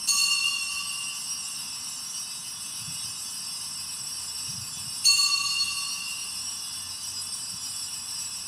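Altar bells rung twice, about five seconds apart, each ring starting sharply and a cluster of high clear tones fading slowly. The ringing marks the elevation of the chalice at the consecration of the Mass.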